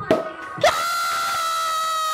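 A drawn-out high-pitched scream, 'kyaaa', starting just over half a second in and held at a steady pitch, an excited cry at a champagne being opened.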